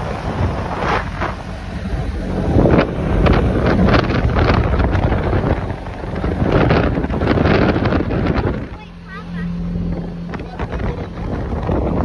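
Wind buffeting the microphone from a moving vehicle, over its engine and road noise. About nine seconds in the wind briefly drops and a steady low engine hum comes through.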